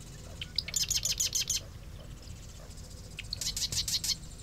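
Marsh wren singing twice. Each song is a few separate introductory notes running into a rapid, rattling trill about a second long.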